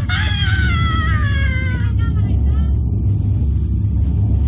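A man's long drawn-out yell sliding down in pitch over about two seconds, then fading to shorter weaker vocal sounds, over a steady low wind rumble on the ride-mounted camera's microphone.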